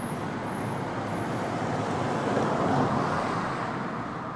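Street traffic noise, a steady rush of passing cars that swells a little around the middle and then eases off.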